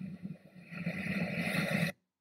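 Rushing sound of ocean surf and wind from a beach video clip playing back. It dips briefly about half a second in, swells again, and cuts off abruptly just before the end as playback stops.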